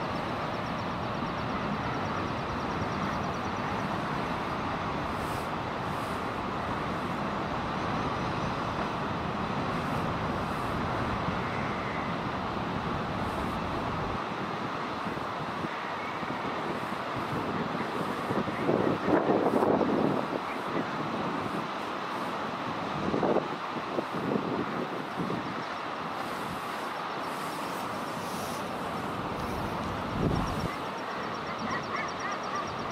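Common guillemots calling on a breeding ledge: a loud bout of harsh calls about two-thirds of the way in and another a few seconds later, over a steady rushing noise whose deep rumble drops away about halfway through.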